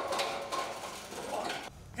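Weight-room background: a few light metallic clinks among faint distant voices, the sound dropping away near the end.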